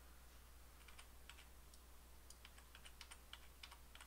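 Near silence with faint, scattered clicks of a computer mouse and keyboard, coming more often in the second half, over a low steady hum.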